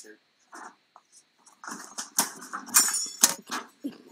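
A person's voice in short, loud bursts, loudest two to three seconds in.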